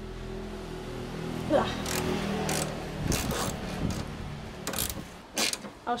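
Ratchet wrench clicking in several short bursts as it works a crusty headlight mounting bolt, over a steady low hum in the first half.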